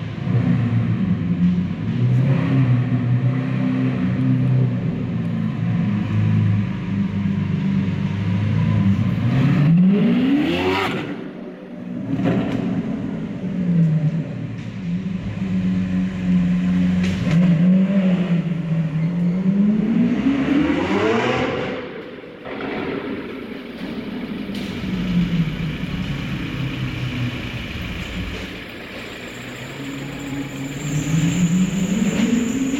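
Lamborghini Aventador S's V12 engine running at low speed inside a concrete underground car park, its revs climbing sharply and falling back twice, about ten and about twenty seconds in.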